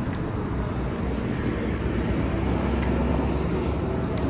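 Steady low rumble of street traffic, with a few faint ticks.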